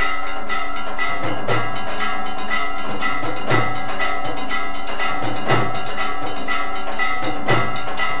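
Hindu temple aarti accompaniment: bells ringing on and on, with metallic strokes about twice a second and a heavier drum beat every two seconds.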